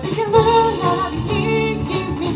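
A live band performing a cover song through PA speakers: a sung melody over guitar and band accompaniment.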